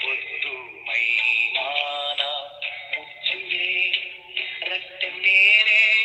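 A recorded sung setting of a Kannada poem with musical accompaniment. The voice holds wavering notes in phrases with short breaks between them.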